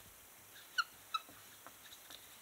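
Two short, high squeaks, a third of a second apart, from a felt-tip marker dragged across the board as a tree's leaves are drawn.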